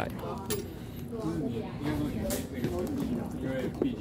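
Background voices talking quietly, with a couple of light clicks or knocks in between.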